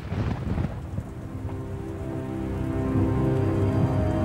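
A thunderclap's rumble dying away over a hiss of rain in the first second. Dark, eerie film-score music with long held tones then swells in and grows steadily louder.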